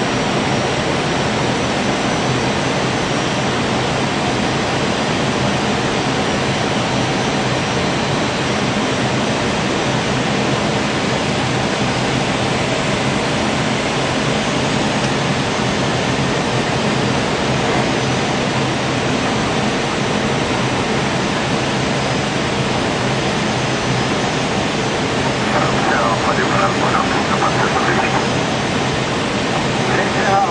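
Steady rushing noise inside an Airbus A319 cockpit on approach, from air streaming over the nose and the jet engines running. Near the end a short voice, likely cockpit radio or crew talk, is heard under the noise.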